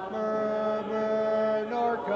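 Voices singing a slow hymn a cappella, with no instruments, in long held notes that step from one pitch to the next.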